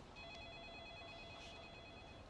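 Faint steady electronic tones, several pitches held together for about two seconds over quiet room tone.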